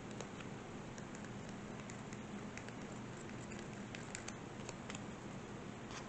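Faint, irregular light clicks and ticks over a steady low hum.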